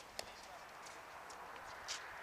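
Quiet outdoor tennis-court ambience with a few light sharp taps, one just after the start and a stronger one near the end.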